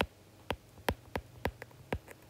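Stylus tip tapping on a tablet's glass screen while handwriting: about seven short, sharp clicks at irregular intervals.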